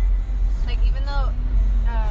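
A woman's voice making brief vocal sounds about a second in and again near the end, over a steady low rumble.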